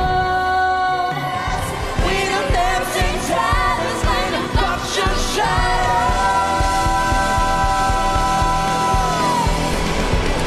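Musical-theatre number: singing over a band accompaniment with drum hits. About halfway through, a long note is held for nearly four seconds, then cut off.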